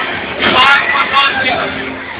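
A person's voice, loud and close to the microphone, for about a second near the middle, over the steady din of a crowded hall.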